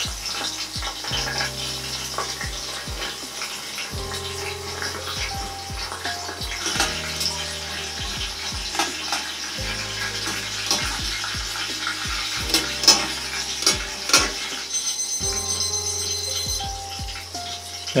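Eggplant pieces deep-frying in olive oil in a small saucepan: a steady crackling sizzle, with a few sharp clicks from metal tongs turning the pieces about two-thirds of the way through. Background music with a steady bass line plays over it.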